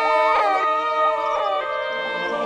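Women wailing and sobbing in grief: drawn-out crying calls that bend up and fall away about once a second, over a slow, mournful music score whose held chords come forward near the end.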